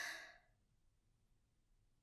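A woman's short, breathy sigh in the first half second, then near silence.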